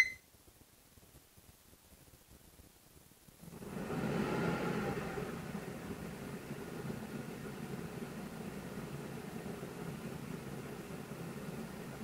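A short beep as the WeCreat PP2301 fume extractor is switched on, then about three seconds later its extraction fan starts, swells over a second and runs steadily at 50% fan power. At this setting it measures a little under 60 decibels.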